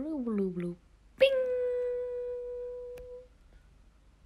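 A voice-like sound sliding down in pitch, then, about a second in, a single pitched note struck suddenly that rings and fades away over about two seconds.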